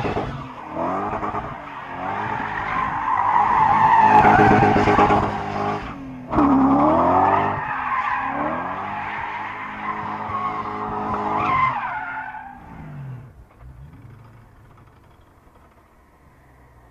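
BMW E39 540i's 4.4-litre V8 revving up and down as the car spins donuts, its rear tyres squealing and smoking. Near the end the sound fades away as the car drives off.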